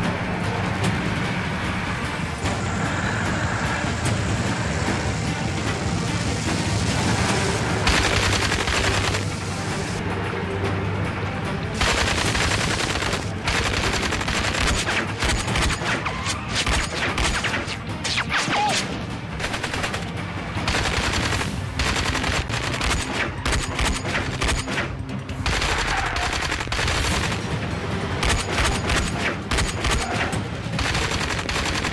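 Rapid bursts of automatic-rifle gunfire in a staged shootout, thickest from about twelve seconds in, over background music.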